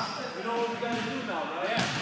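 A basketball bouncing on an indoor gym court a few times, ringing in the large hall, under the indistinct chatter of many voices.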